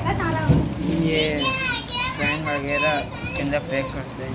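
Children's voices talking and calling out over one another, high-pitched and lively.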